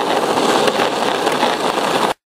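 Skateboard wheels rolling on asphalt street, a steady rolling noise.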